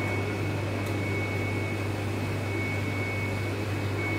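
Steady machine hum of running kitchen equipment, a constant low drone with a thin high whine held over it.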